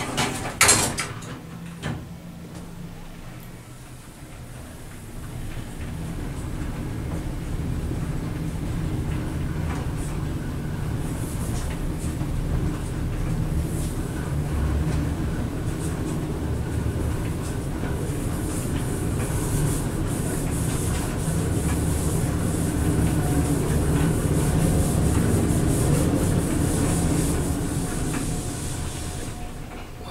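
Westinghouse overhead traction elevator car travelling upward: a low rumble and rush of air that builds over the first few seconds, holds steady through the climb, and fades as the car slows near the end. A couple of short knocks come in the first two seconds.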